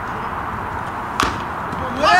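A wooden baseball bat hitting a pitched ball: one sharp crack about a second in.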